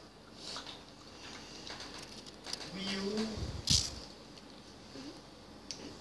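A person eating a mouthful of boiled egg, with soft mouth and chewing noises, a brief closed-mouth hum about halfway through, and a sharp click just after it.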